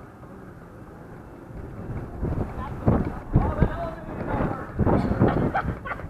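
Wind buffeting the microphone, then indistinct voices talking from about two seconds in.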